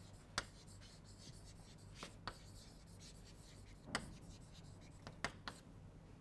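Chalk writing on a blackboard: faint, irregular taps and short scratches of the chalk, the loudest tap about four seconds in, over a low steady room hum.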